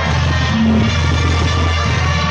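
Loud music for chinelo dancing, with a heavy, steady bass and sustained melodic notes, recorded close and somewhat distorted.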